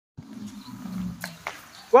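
Two sharp taps about a quarter second apart over a low background hum. Right at the end comes the loudest sound, a man's loud call of "One," falling in pitch, the first number of a counted drill.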